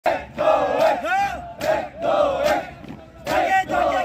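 A squad of marching cadets shouting in unison in several loud bursts, one drawn out with its pitch rising and falling.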